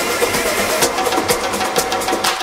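Tribal tech house DJ mix: a busy percussion groove of drum and wood-block-like hits with short synth notes, the bass thinned out.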